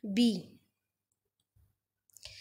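A woman's voice says one short word, then near silence except for a single faint mouse click about one and a half seconds in, as the presentation slide is advanced.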